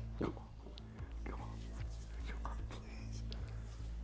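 Quiet background music with soft, indistinct whispering and mouth sounds over it.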